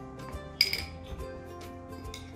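A spoon clinking against a small ceramic ramekin while stirring a dressing, with one sharp ringing clink about half a second in and a few lighter taps. Background music plays throughout.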